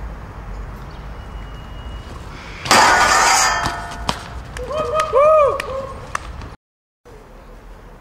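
A BMX bike lands hard on concrete below a stair set, a loud clattering impact with a little metallic ringing about three seconds in. A person's voice gives a short shout about two seconds later. Near the end the sound cuts out for a moment at an edit.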